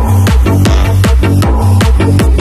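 Vinahouse electronic dance music: the full beat drops in right at the start, with a heavy, regular kick drum and bass under quick hi-hat and percussion hits.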